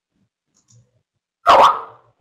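A single short, loud bark-like animal call about one and a half seconds in, after near silence.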